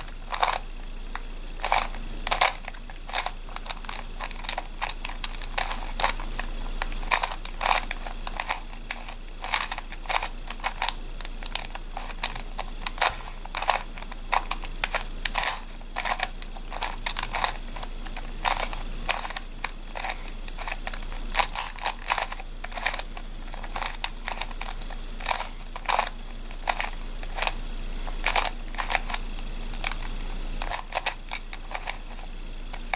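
Plastic face-turning octahedron puzzle being turned by hand: quick clicks and rattles of its layers snapping round, in short irregular runs with brief pauses between.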